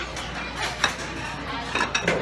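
Empty ceramic sushi plate slid into the table's plate-return slot at a conveyor-belt sushi bar, a sharp clink a little under a second in, over a restaurant background.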